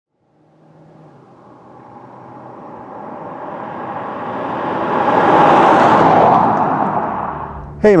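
A 2018 Hyundai Elantra GT driving past: tyre and engine noise builds slowly as the car approaches, is loudest about five to six seconds in, then fades quickly as it goes by.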